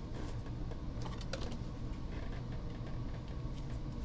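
A few faint, light clicks and taps of a clear plastic card holder being handled and turned in the fingers, over a steady low hum.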